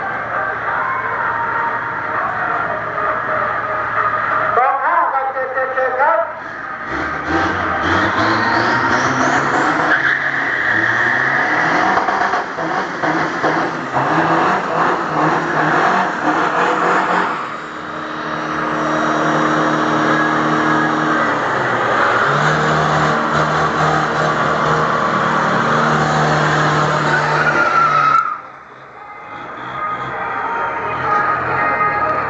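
Racing diesel pickup trucks (Isuzu D-Max and Toyota Hilux Vigo) at a drag strip: engines revving up and tyres spinning in a smoky burnout, then engines held steadily at high revs before cutting off suddenly near the end.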